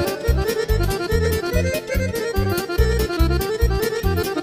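Instrumental break of Romanian party folk music (sârbă/horă medley): a fast, busy lead melody over a steady bass-and-drum dance beat, with no singing.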